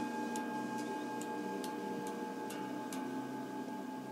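Soft background music for a meditation: steady held drone tones, with a few faint ticks scattered through.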